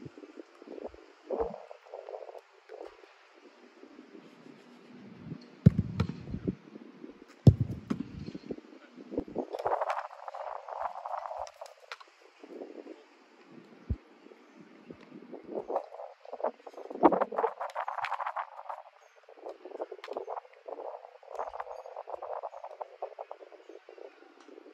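Sharp thuds of a soccer ball being kicked and hitting the goalkeeper or the goal, several of them a few seconds apart, the loudest two about six and seven and a half seconds in, over an uneven rushing noise.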